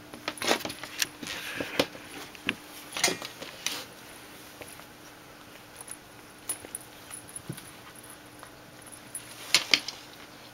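Cat's plastic ring toy clicking and rattling on a wooden floor as the cat bats, bites and rolls with it. There is a flurry of sharp clicks in the first few seconds, a few scattered ones after that, and another quick cluster near the end.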